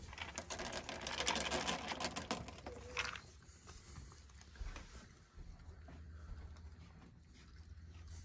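Dry food (seeds and nuts) tossed from a container onto a wooden deck: a dense rattle of small pattering clicks for about two seconds. Then sparse, quieter clicks and rustles as a raccoon feeds among the scattered food.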